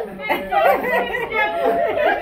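Several people's voices talking and calling out over one another.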